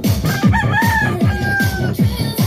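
A rooster crows once, starting about half a second in and holding for over a second, over electronic dance music with a fast, steady kick-drum beat.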